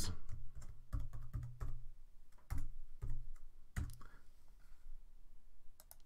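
Typing on a computer keyboard: a run of irregular keystrokes, dense at first and then sparser.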